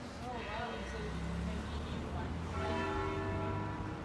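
Street traffic: a heavy vehicle's low rumble rises and passes, and a steady whine joins it about two and a half seconds in.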